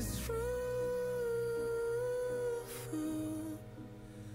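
Song playback: a male singer holds one long, steady note, hummed or sung softly over quiet accompaniment, then moves to a shorter, lower note. The music grows quieter near the end.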